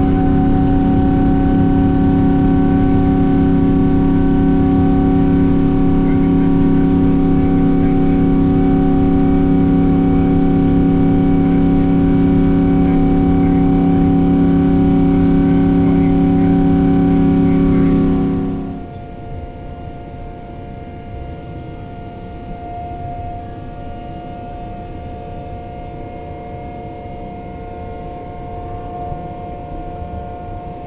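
Boeing 777-200ER jet engines at takeoff thrust, heard from inside the cabin: a loud, steady rumble with several steady whining tones through the takeoff roll and the first climb. About 18 seconds in, the sound drops abruptly to a quieter, steady cabin drone with a fainter whine.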